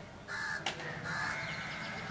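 A crow cawing twice: a short harsh call, then a longer one about a second in.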